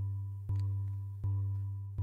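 Marimba sample looping in Arturia Pigments' sample engine: a held low tone that restarts about every three-quarters of a second, with a small click at each loop point and a slight fade between restarts.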